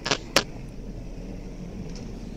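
A curling stone running down the ice while brooms sweep in front of it: a steady rumbling hiss. Two sharp clicks come in the first half-second.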